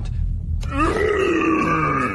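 A man's drawn-out grunt in an orc's voice, starting just under a second in and held for about a second and a half.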